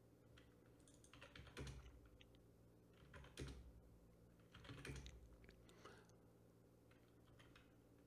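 Faint clicking from a computer keyboard and mouse, in three short clusters about a second in, around three and a half seconds and around five seconds, over a low steady hum.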